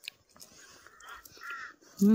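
A single short bird call, faint, about one and a half seconds in, over quiet outdoor background noise.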